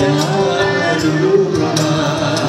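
Live Malay ghazal music: a singer's voice over accordion, gambus (oud) and bass guitar, with a light steady percussion beat.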